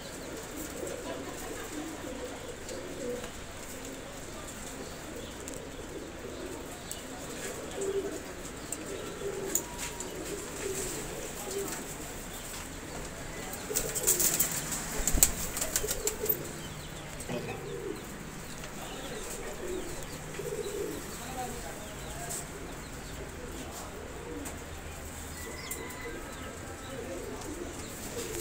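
A group of Teddy pigeons cooing softly throughout, with a burst of wing-flapping about halfway through as one bird takes off and flies.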